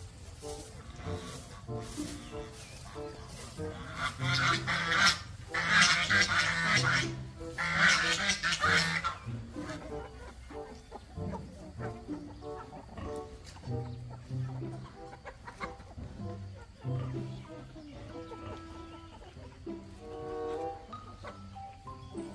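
A chicken calling loudly in two stretches, one about four seconds in and a longer one about six to nine seconds in, over background music with a steady melodic line.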